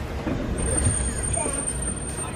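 Safari ride truck running steadily with a low engine and road rumble, heard from on board the open-sided vehicle, with a thin high whine from about half a second in.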